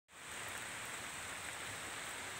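Light rain falling in woodland: a faint, steady, even hiss of drops on leaves.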